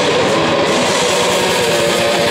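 Death metal band playing live: heavily distorted electric guitars over fast, dense drumming, loud and unbroken.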